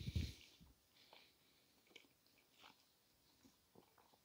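Faint chewing and mouth sounds of someone eating a mouthful of doner kebab, with a short soft sound at the very start and a few faint clicks spread through.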